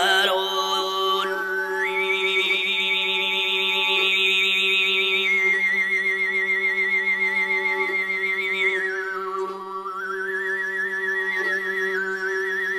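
Tuvan sygyt throat singing: a steady low vocal drone with a whistle-like overtone melody held high above it. The high tone climbs about two seconds in, holds with a quick wobble, steps down around the middle, dips low near ten seconds and glides back up to hold again.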